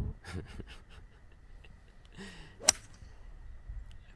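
Golf club striking the ball on a tee shot: one sharp, very brief crack about two and a half seconds in, the loudest sound, after a short laugh near the start.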